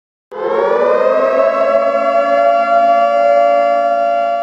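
Siren sound effect for a logo intro: a loud wail that starts just after the beginning, rises a little in pitch over the first second and then holds one steady pitch.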